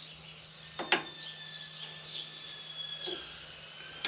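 Light handling clicks of metal tools at a mini lathe, with one sharp click about a second in and softer ones later, over a steady low hum and faint high chirps.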